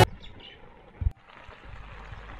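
Faint outdoor ambience with a single short low thump about a second in.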